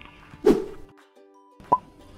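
Editing sound effects on a slide transition: a single sudden hit with a dropping pitch about half a second in, then faint background music and a second, shorter blip near the end.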